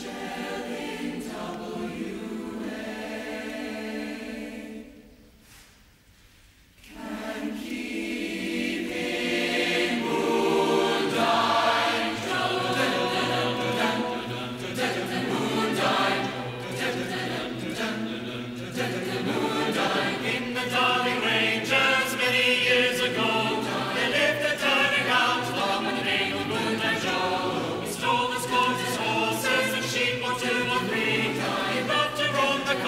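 Large mixed choir singing. A held chord dies away about five seconds in, there is a short silence, then the choir comes back in and builds to a fuller, louder sound.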